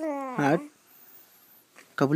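Young infant cooing: a long held vowel sound followed, about half a second in, by a short coo that bends in pitch.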